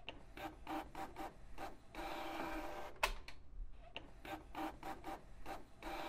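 Recording of a printer at work, played back: a series of quick mechanical clicks, about a second of steady whirring, and a sharp snap about three seconds in, followed by more clicks and whirring.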